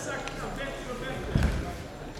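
Voices calling out around a grappling mat, with a single dull thump on the foam mat about one and a half seconds in.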